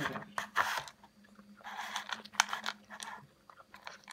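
A cat crunching and chewing dry kibble in irregular bursts, densest about half a second in and again around two seconds in.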